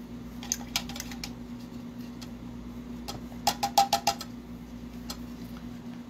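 Small hard clicks and clinks of paintbrushes being handled against painting gear on a table, with a quick run of ringing clinks about halfway through. A steady low hum runs underneath.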